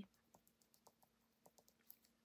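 Near silence with a few faint, light ticks: a pen tip dabbing on card.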